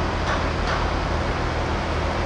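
Steady low engine rumble with a constant hum under even outdoor noise, without breaks or sudden events.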